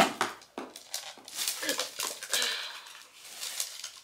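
Handling a clear plastic handbag: its metal chain strap clinking and the clasps clicking as it is unhooked, with irregular knocks and rustles, the sharpest click at the very start.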